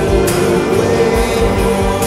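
Lo-fi psychedelic rock recorded on a Tascam four-track tape machine: sustained, layered chords with singing over them and a few sharp cymbal-like strokes.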